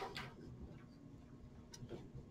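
Quiet room tone with a couple of faint clicks, one sharper near the end, and soft low knocks.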